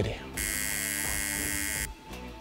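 Tattoo machine buzzing steadily for about a second and a half, starting just after the beginning and cutting off suddenly near the end.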